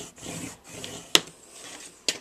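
Colored pencil rubbing over a waxy paper plate as a line is traced, a faint scratchy sound, with one sharp click a little past halfway.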